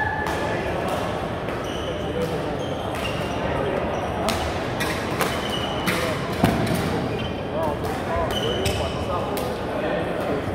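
Badminton rackets striking shuttlecocks in a rally, a string of sharp cracks from this and neighbouring courts, the loudest about six and a half seconds in. Court shoes squeak briefly on the hall floor, over a background of players' voices.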